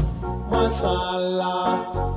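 A Vanuatu pop song: a voice singing over a steady bass line and backing instruments.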